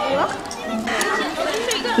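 Overlapping chatter of several people's voices, with no clear words.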